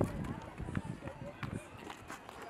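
Faint chatter of an outdoor crowd of strolling people, with scattered light footsteps on paving.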